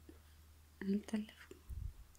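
A soft spoken word or two, half-whispered, followed near the end by a brief low thump.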